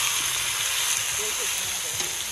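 Iguana curry frying in a pot over a wood fire, with a steady sizzle as a spoon stirs it.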